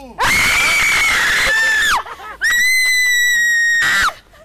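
A person screaming twice: two long, loud, high-pitched screams held at an even pitch, each nearly two seconds, with a short break between.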